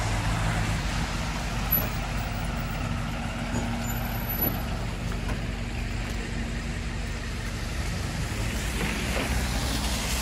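A delivery box truck's engine idling close by, a steady low hum, over the hiss of traffic on wet, slushy streets.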